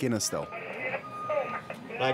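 Two-way dispatch radio: a hissy, narrow, tinny transmission with a faint voice breaking through it.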